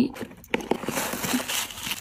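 A small cardboard drawer of an advent calendar being pushed and pulled open, with a click about half a second in, followed by the rustle of the tissue paper wrapped around the gift inside.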